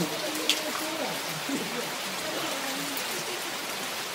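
A steady, even hiss of background noise, with faint, low voices murmuring underneath.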